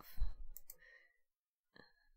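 A soft thump just after the start, then a few faint clicks of a computer mouse.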